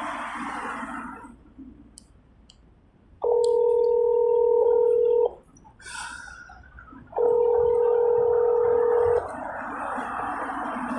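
Telephone tone through a phone's speaker, a steady electronic beep sounding twice for about two seconds each time, heard as a call fails to connect or ends.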